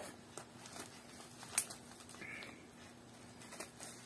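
Faint handling of a plastic mailer package, with one sharp click about one and a half seconds in.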